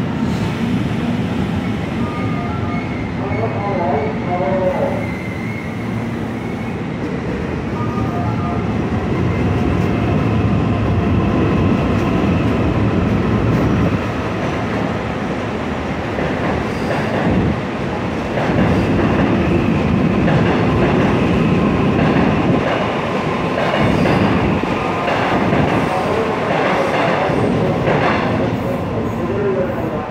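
ITX-Cheongchun electric multiple unit pulling into the station and rolling past the platform close by, wheels running on the rails. The sound builds from about ten seconds in and stays loud as the cars go by.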